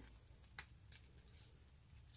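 Near silence with two faint clicks of metal circular knitting needles as knit stitches are worked.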